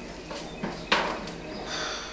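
Faint kitchen handling noise at a counter, with one sharp click or knock about a second in.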